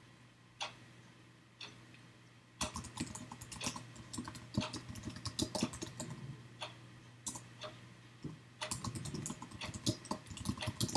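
Computer keyboard typing. It starts as single keystrokes about a second apart, then turns into quick runs of keystrokes as a command is typed out, with a short pause near the middle. A faint steady low hum sits underneath.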